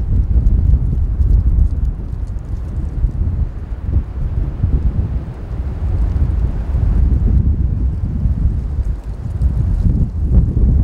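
Wind buffeting the microphone: a gusty low rumble that rises and falls irregularly.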